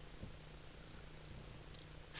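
Faint room tone with a steady low hum and a slight tick about a quarter second in.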